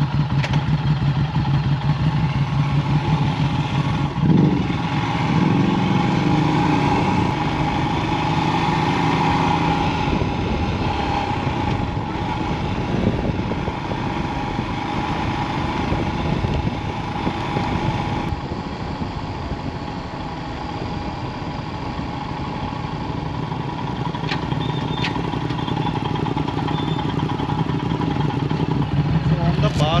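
Motorcycle engines idling, then a Royal Enfield Himalayan's single-cylinder engine pulling away about four seconds in and running at road speed with wind noise on the helmet microphone. Near the end the bikes slow back to idle.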